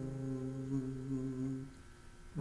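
A man humming one long, low held note that stops about three-quarters of the way through, leaving a short near-silent gap.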